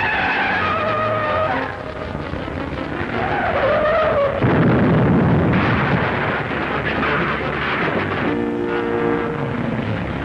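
Film sound effects of a car chase: tyres squealing in the first seconds and again around three seconds in, then a sudden loud crash with a long rumble just over four seconds in. Music comes in near the end.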